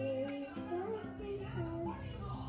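A young girl singing a melody, with music playing behind her.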